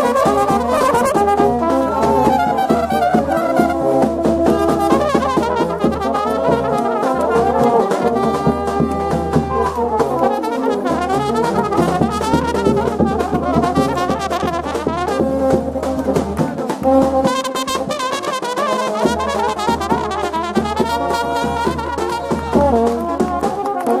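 Serbian Roma brass band playing live up close: trumpets and horns in fast interweaving melodic lines over a steady bass.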